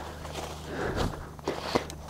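Footsteps through dry fallen leaves and undergrowth: a few soft, uneven steps.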